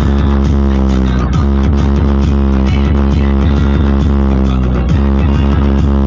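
Loud electronic dance track with heavy bass and a steady beat, played through a large outdoor DJ speaker stack.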